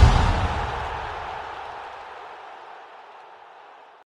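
The ringing tail of a deep boom-and-whoosh sound effect on a broadcast end-card graphic, dying away slowly and evenly until it is faint.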